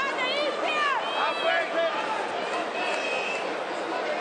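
Loud, high-pitched shouts, most of them in the first two seconds and one drawn out near three seconds in, over a steady murmur of arena crowd noise.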